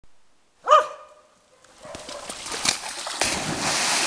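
A Newfoundland dog barks once, then splashes through the water and leaps into the river, with heavy splashing from about three seconds in.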